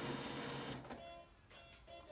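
Xerox B215 laser printer warming up after power-on: a steady machine whir that cuts off just under a second in, after which only a few faint tones remain.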